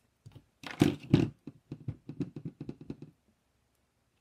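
Two or three sharp plastic knocks, then a quick run of light taps, about six a second, that stop a second before the end. This is a clear acrylic stamp block being tapped onto a dye ink pad to ink the stamp.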